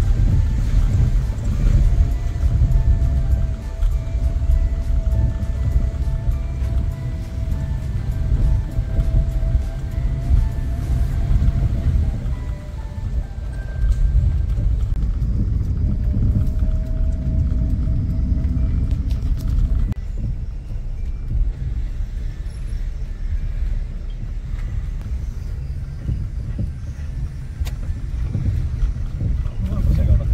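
Car cabin noise while driving: a steady low rumble of engine and tyres heard from inside the car, with a faint held tone over it twice.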